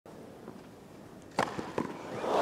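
Tennis ball struck by a racket on a grass court: one sharp pock about one and a half seconds in, followed by two fainter knocks.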